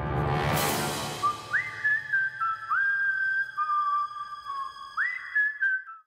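An eerie whistled melody: single high notes that glide up into each other and fall away, over a held chord with a rushing swell at the start. It cuts off suddenly near the end.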